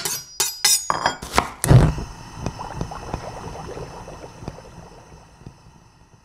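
Title-sequence sound effects: a quick run of sharp clinking hits, a heavier hit near two seconds in, then a ringing tail that slowly fades away.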